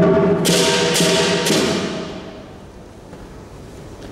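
Lion dance percussion: a loud hit with a gong ringing, then three cymbal crashes about half a second apart, all dying away within about two and a half seconds.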